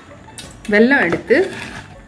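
A single clink of a utensil against a bowl about half a second in, followed by a voice for about a second.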